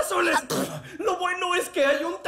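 An animated character's voice making wordless vocal noises and throat sounds, in short bursts with brief pauses.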